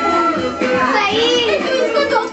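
A group of children playing and calling out over background music, their high voices rising and falling, loudest about a second in.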